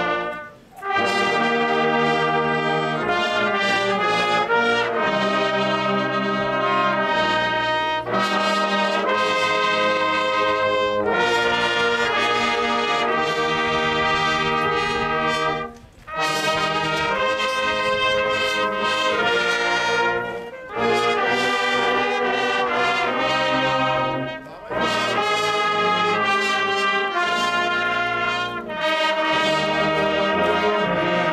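Brass band of trumpets and lower brass playing a piece in full sustained chords, with short breaks between phrases: one near the start, then several in the second half.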